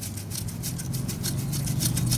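Ratchet wrench running a transmission bolt in, with rapid, even ticking over a steady low hum that starts about half a second in.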